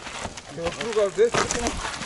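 Indistinct voices of people talking, with a short scuffing rustle about a second and a half in.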